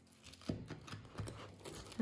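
A knife cutting through a baked pizza crust on a wooden board: several short scraping cutting strokes, starting suddenly about half a second in.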